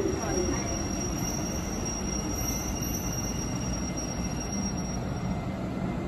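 Train pulling slowly into an underground station: a steady rumble with a thin high squeal that fades out about five seconds in.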